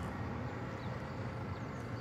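Steady low hum of distant city traffic, light and even.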